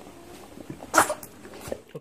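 A dog sniffing close up, with one short, sharp nasal burst about a second in.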